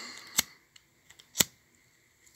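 Two sharp clicks about a second apart, following a soft hiss that fades out in the first half second.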